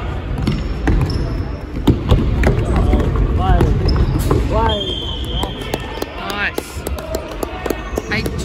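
Futsal being played in an echoing indoor hall: the ball is struck and thuds on the wooden court several times, shoes squeak on the boards, and players call out.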